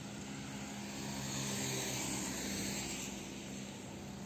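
A vehicle driving on a wet road: a steady engine drone with a constant low tone under the hiss of tyres on the wet surface. It grows slightly louder in the middle.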